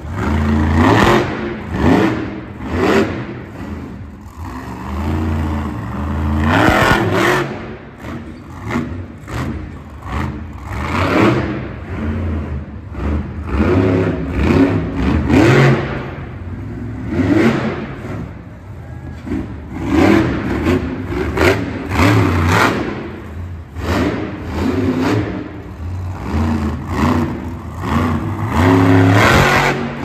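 Zombie monster truck's supercharged V8 revving hard again and again as it drives and jumps the dirt track. The engine surges up and falls back every second or two.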